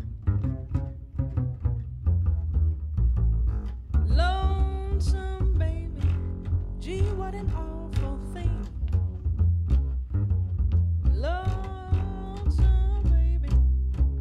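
Plucked upright double bass playing a steady line of notes. From about four seconds in, a woman's voice sings long held notes with vibrato over it, in several phrases.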